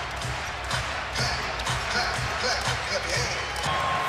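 A basketball dribbled on a hardwood court, repeated thumps over the steady noise of an arena crowd.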